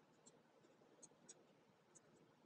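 Very faint tracing of a black marker along the edge of a paper template on corrugated cardboard, with a few soft ticks as the tip catches.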